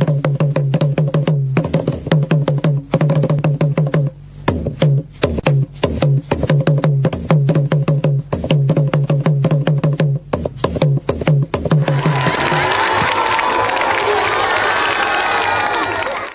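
Mbonda hand drum played fast, with rapid strikes on a low, ringing tone broken by short pauses. About twelve seconds in the drumming gives way to a cheering crowd.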